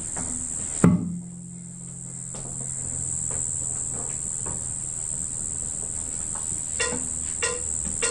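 A sharp click about a second in, then the intro of a backing track: low sustained notes that swell in gently, with a few soft ticks, over a steady high-pitched whine.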